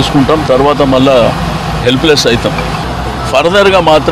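A man speaking, with a short softer pause about three seconds in, over a steady low hum.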